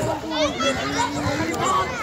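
Children and adults talking and calling out, several voices overlapping.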